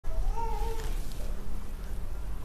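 A single short, high-pitched animal call in the first second, rising and then holding, over a steady low hum.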